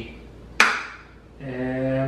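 One short, sharp burst from a hand-held plastic trigger spray bottle as its nozzle is worked, then a man's voice starting to hum an "uh" near the end.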